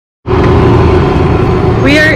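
Wind buffeting the camera microphone: a loud, steady low rumble that starts abruptly just after the beginning, with a woman starting to speak near the end.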